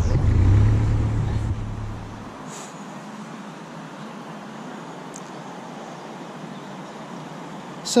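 Narrowboat's diesel engine running with a steady low drone, cutting off abruptly about two and a half seconds in; after that only a faint, even outdoor hiss.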